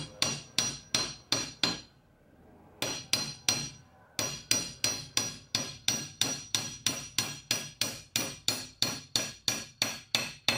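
Hammer striking a chromoly Dana 30 axle shaft clamped in a bench vise, driving a Spicer U-joint bearing cap into the shaft's yoke. The sound is a steady run of sharp, ringing metal taps about three a second, broken by a short pause about two seconds in.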